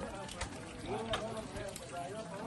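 Indistinct voices over an ox-driven sugarcane mill turning, with two sharp knocks, one about half a second in and one about a second later.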